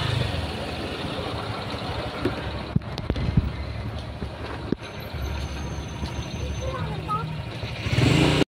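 Small motor scooter engine running at low speed, a steady low hum, with a few sharp knocks around the middle.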